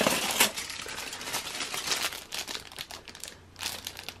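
Crumpled aluminium foil crinkling as it is lifted and handled. It is loudest in the first half second, then thins to softer rustles.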